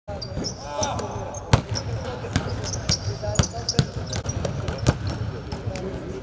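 Several basketballs bouncing on an indoor court, irregular sharp bounces several times a second, echoing in a large empty arena. Players' voices are heard among them.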